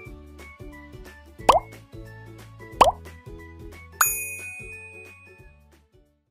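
Light background music with a steady beat, with two short pop sound effects about a second and a half and about three seconds in, then a bright bell-like ding about four seconds in that rings on as the music fades out. These are the sound effects of an animated like-and-subscribe end card: pops for the button clicks, a ding for the notification bell.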